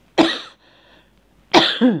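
A person coughing twice, about a second and a half apart, the second cough longer with a voiced, falling tail.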